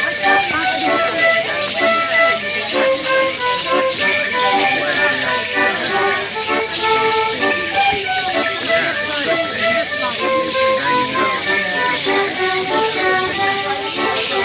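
Folk musicians playing a lively Morris dance tune, with a fiddle carrying the melody in a steady run of notes. The bells strapped to the dancers' shins jingle with their steps.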